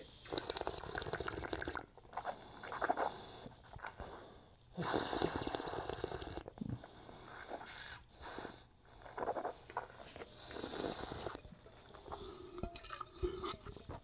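A wine taster slurping a mouthful of wine, drawing air through it in three drawn-out hissing pulls, each a second or more long, with softer breaths between.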